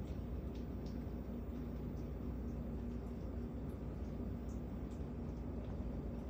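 Red squirrel gnawing a peanut shell: a few faint, scattered clicks over a steady low hum.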